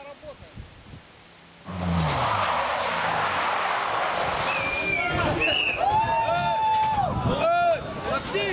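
BMW 3 Series rally car sliding through a corner on wet tarmac. It comes in suddenly about two seconds in, with tyre noise and an engine note that falls as the driver lifts off. Spectators shout and exclaim near the end.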